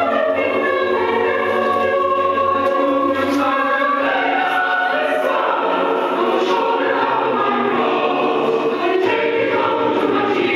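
A recorded choir singing a spiritual in several-part harmony, a jubilee, the fast upbeat kind of spiritual, with low bass voices under the upper parts.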